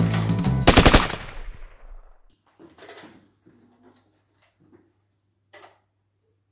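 Music cut off about a second in by a short burst of rapid machine-gun fire, several shots in quick succession, echoing away over the next second; a gunfire effect standing in for the shots of a toy blaster. Afterwards only faint small rustles.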